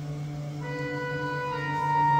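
Instrumental intro of a karaoke backing track: a melody of long held notes over a steady low tone, getting louder toward the end.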